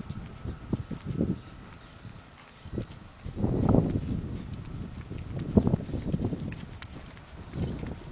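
Hoofbeats of a paint mare moving along the rail of a soft dirt arena: dull, repeated thuds. A louder rush of noise swells about three and a half seconds in and again near six seconds.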